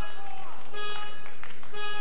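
Short electronic beeps, each a steady pitched tone about a third of a second long, coming about once a second.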